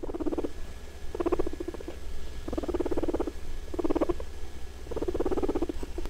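Guinea pig purring in five short pulsing bursts, roughly one a second, over a low steady hum.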